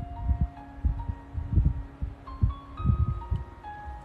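Soft background music of sustained, chime-like notes stepping from one pitch to another, with several dull low thumps scattered through it.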